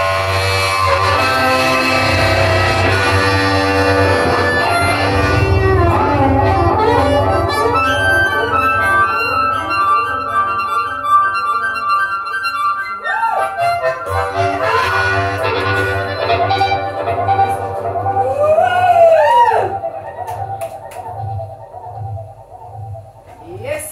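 Harmonica solo of sustained chords and single notes, several bent up and down in pitch. It swells to its loudest and then ends about twenty seconds in.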